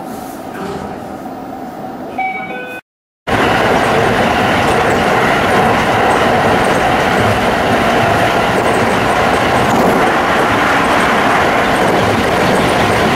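Tsukuba Express electric train heard from the driver's cab, at first a moderate running sound with a short run of electronic tones just before a brief silence. After the silence, about three seconds in, it is a much louder, steady rush of the train running at speed.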